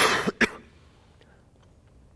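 A man coughs twice in quick succession, the second cough about half a second after the first.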